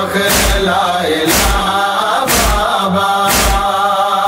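Male chorus chanting a noha (Shia lament) in long held lines, over a heavy, steady beat about once a second.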